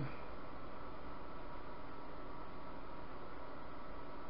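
Steady, even hiss of room tone with no distinct event.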